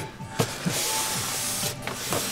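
White foam packaging box being handled and slid across a desk: a knock, then a hissy rubbing scrape lasting about a second, with a brief squeak in it.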